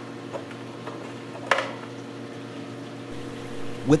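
Steady hum of aquarium equipment with several evenly spaced tones over a faint watery hiss, and a sharp plastic click about one and a half seconds in, with a few lighter ticks, as fluorescent bulbs are twisted in the algae scrubber's light enclosure.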